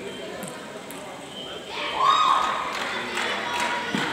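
Table tennis balls clicking off tables and bats in an indoor hall, with voices around. About two seconds in there is a loud, short high tone that rises in pitch, and the clicks come faster near the end as a rally starts.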